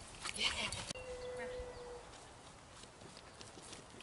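A running dog's paws on grass and a wooden agility contact board: a few quick footfalls, most of them in the first second.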